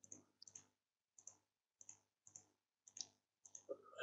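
Faint computer mouse clicks, mostly in quick press-and-release pairs, about every half second, with a slightly louder pair near the end.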